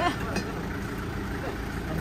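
An engine idling steadily in the background, a low rumble, with faint voices over it.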